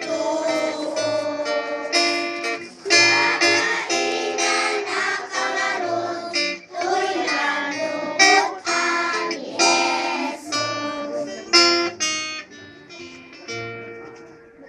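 Children singing with acoustic guitar accompaniment. The music stops near the end.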